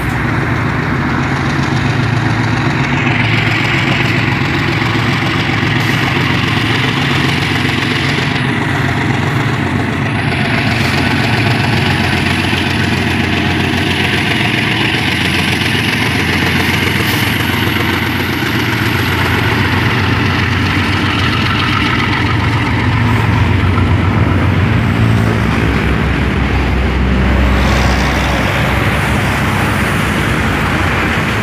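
Two GE B23-7 diesel-electric locomotives running steadily under load as they pull a freight train past, with a faint high whine slowly rising through the middle. Freight cars roll by near the end.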